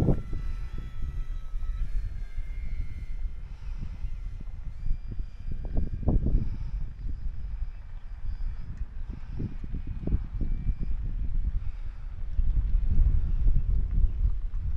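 Wind buffeting the microphone in gusts, over the faint, steady whine of the E-flite Beechcraft D18 RC plane's twin electric motors and propellers as it flies a low, slow pass, the tones drifting slightly in pitch.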